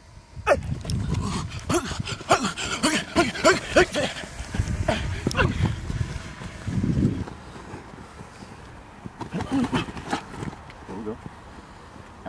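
Short bursts of people's voices, calls and exclamations rather than clear words, mostly in the first few seconds and again near the end, over a low rumble in the first half.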